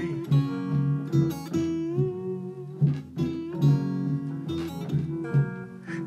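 Instrumental passage of a string-band song: acoustic rhythm guitar strumming steadily, with a slide diddley bow gliding between notes about two seconds in and a washtub bass underneath.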